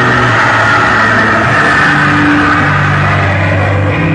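Loud music played through a carnival sound truck's speaker system, with held bass notes that shift pitch every second or so.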